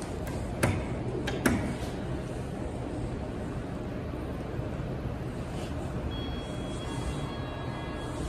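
Elevator hall call button pressed: two sharp clicks early on, the second the louder, then a steady background hum while the car is called. Faint thin high tones set in about six seconds in.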